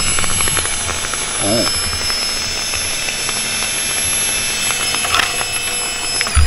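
Bosch electric fuel pump, on its tank hanger and powered outside the tank, running with a steady high whine and a crackle of small clicks throughout. The pump is arcing and shorting out against the hanger, which lacks its rubber isolator.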